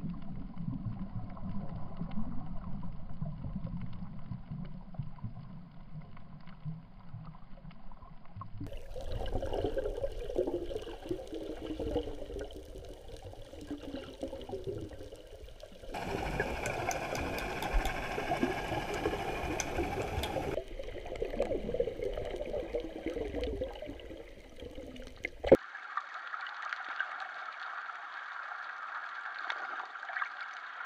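Water heard through a submerged camera: a muffled, gurgling and bubbling rush that changes abruptly several times as the clips change. A sharp click comes about 25 seconds in.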